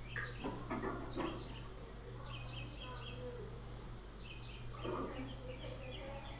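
Faint classroom background: a steady low hum under quiet voices, with clusters of short high chirps repeating through the middle and latter part.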